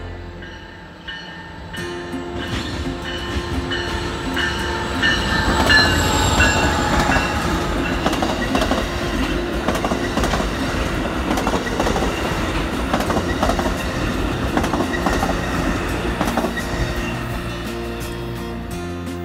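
Amtrak Pacific Surfliner train, led by a Siemens SC-44 Charger diesel locomotive, passing close by. The sound builds to its loudest about six seconds in as the locomotive goes by. The bilevel passenger cars then keep up a steady rumble and clatter of wheels over the rail joints.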